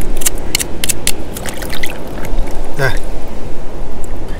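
Back of a knife blade scraping barnacles off mussel shells: a run of short, sharp scratchy clicks over a steady low rumble.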